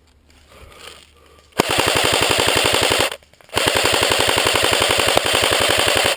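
Airsoft rifle firing on full auto in two long bursts: a short pause about halfway, then a longer burst that runs on to the end.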